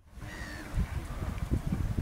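Gusty wind buffeting the microphone outdoors, a low rumbling in uneven gusts over faint background ambience.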